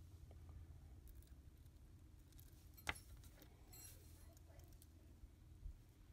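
Near silence with a low room hum; about three seconds in, one sharp click of steel jewelry pliers against a small metal jump ring and charm, followed about a second later by a few faint metallic clinks.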